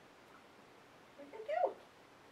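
A dog gives one short, high whine about a second and a half in, rising and then dropping sharply in pitch.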